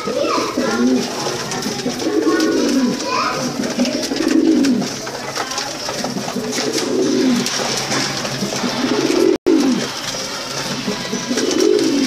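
Domestic pigeons cooing in a loft, a run of low, rolling coos coming every second or two. The sound drops out for an instant about nine seconds in.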